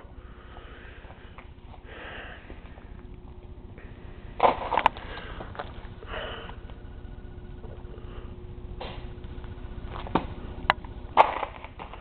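Steady low hum of room tone broken by a few short sniffs close to the microphone, the loudest about four and a half seconds in and again near the end, with a couple of faint clicks.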